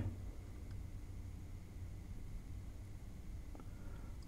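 Quiet room tone: a low steady hum over faint hiss, with two faint ticks, one under a second in and one near the end.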